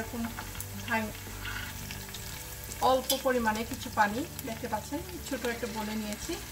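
Chopped onions frying in oil in a stainless steel pot, sizzling steadily while a wooden spatula stirs and scrapes them. A pitched, voice-like sound comes in briefly about three seconds in.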